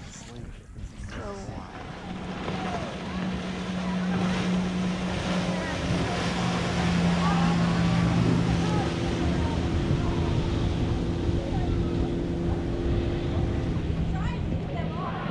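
Motorboat engine running with a steady drone that builds over the first few seconds and then holds as the boat passes towing an inflatable tube, with wind on the microphone.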